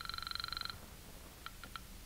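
Telephone ringing sound effect: a rapid trilling ring that stops under a second in, followed by a few faint clicks about a second and a half in as the receiver is picked up.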